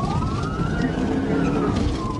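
Police siren wailing, its pitch rising for about a second and then falling, over the pursuing car's engine and road noise.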